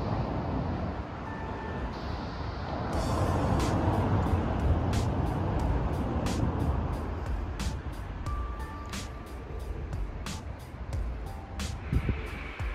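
Low rumble of city traffic with background music over it: a steady ticking beat of about two strokes a second comes in about three seconds in, with a few faint held notes.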